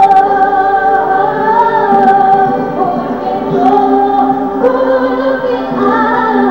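Several voices singing a slow Christian worship song together, holding long notes.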